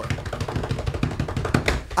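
Hands drumming rapidly on a wooden tabletop as a drum roll: fast, even tapping with a few sharper hits near the end.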